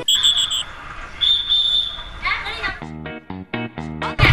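Four quick high electronic beeps, then a single longer high beep. A few short, clipped pitched sounds follow near the end.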